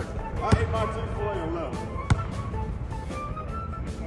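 A basketball bouncing twice on a hardwood gym floor, about a second and a half apart, with music playing underneath.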